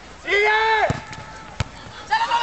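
A person gives one long shout that holds its pitch and then drops off. Two sharp knocks follow, under a second apart.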